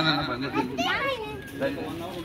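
Children's high voices chattering and calling out, with one brief rising-and-falling call about a second in.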